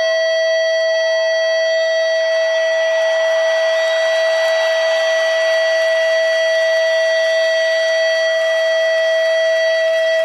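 Electric guitar holding one long sustained note, kept going by feedback, steady in pitch and unbroken, over a soft band backing.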